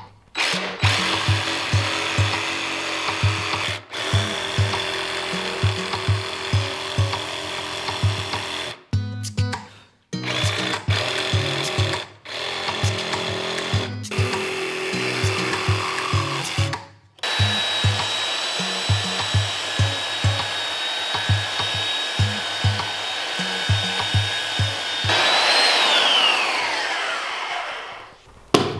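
A DeWalt cordless jigsaw cutting a curve through a wooden board in several bursts, then a belt sander running on the edge with a steady high whine whose pitch falls as it winds down near the end. Background music with a steady beat runs underneath.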